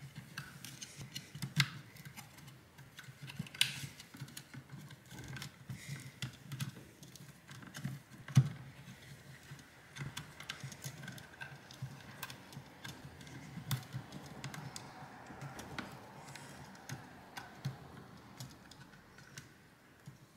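Scattered small clicks and taps of hands handling a JBL Flip Essential speaker's plastic housing and its internal wire connectors. The loudest clicks come about 4 and 8 seconds in.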